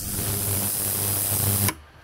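Ultrasonic cleaning bath running with a carburetor body submerged in cleaning solution: a loud, even crackling hiss over a low hum, the sound of the ultrasound working deposits out of the carburetor's passages. It cuts off suddenly near the end.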